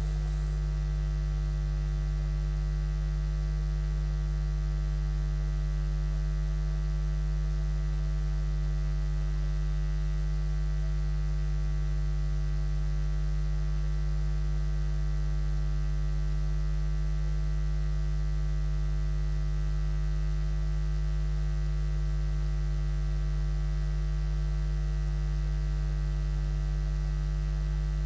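Steady electrical mains hum, a low hum with a ladder of fainter higher buzzing tones above it, unchanging throughout.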